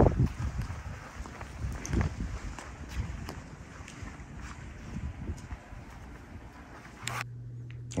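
Footsteps on gravel, a low thump about once a second, with wind on the microphone. Near the end it cuts to a quieter room with a steady low hum.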